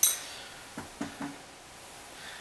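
A cereal bowl set down with a sharp ringing clink, followed by three softer knocks as it is handled.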